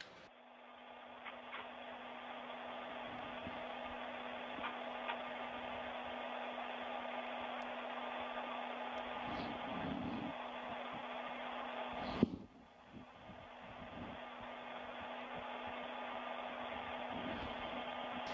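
Steady hiss of the space station's cabin ventilation fans with a low hum, plus a few faint clicks. A sharp click comes about twelve seconds in; the hiss cuts out briefly, then returns.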